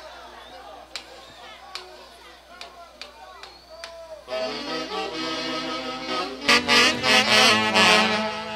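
Faint voices and scattered clicks, then a brass and saxophone band strikes up with a held chord about four seconds in. The full band with drum comes in loudly about two seconds later.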